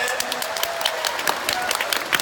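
Live audience applauding: many hands clapping in a dense, irregular patter.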